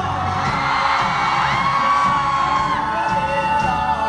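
Live rock band playing with a male lead singer holding long notes into a microphone, and an audience whooping and cheering over the music.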